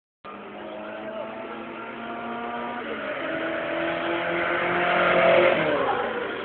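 Volkswagen Caribe four-cylinder engines at full throttle in a drag race, revving up through the gears and growing louder, then passing close by with the pitch falling away near the end.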